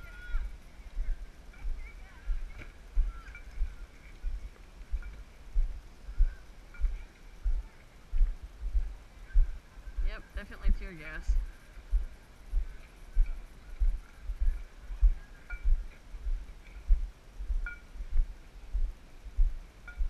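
Footsteps jolting a body-worn action camera while walking: dull thumps at an even pace, about two a second. A voice calls out about ten seconds in.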